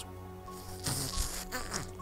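A man's mouth-made sound effect into the microphone, imitating a caterpillar burrowing into skin: a steady low drone with a hissing rush about a second in.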